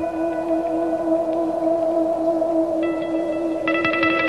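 Live band music: a sustained, slowly wavering held note with its overtones, like a drone at the start of a song. Higher notes join near the end, and plucked guitar strokes begin at the very close.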